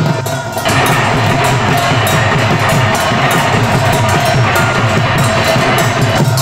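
Dhol drums beaten in a fast, steady rhythm with ringing ghanta (bell-metal gongs) over them. The bright metallic clanging swells in about half a second into the stretch.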